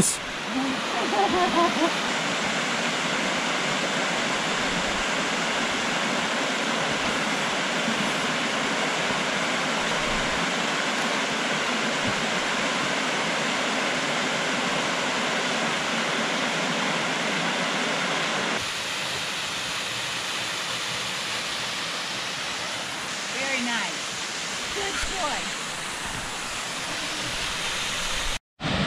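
Steady rushing of a woodland waterfall and its rocky creek cascade. The sound drops a little about two-thirds of the way through. Faint voices come briefly near the start and again near the end.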